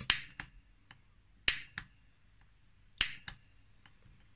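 A lighter's piezo igniter clicking three times, about a second and a half apart. Each press snaps a spark across a small wire gap that serves as a simple spark-gap radio transmitter. Each sharp click is followed by a softer second click about a third of a second later.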